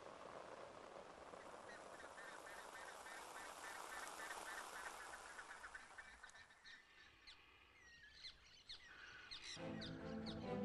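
Faint wild bird calls over a steady hiss: a quick run of short honking notes, then sharp high chirps from parakeets in the second half. Music begins right at the end.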